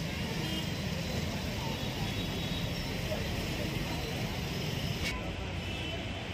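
Busy-road street ambience: steady traffic noise with people's voices in the background, and a brief click about five seconds in.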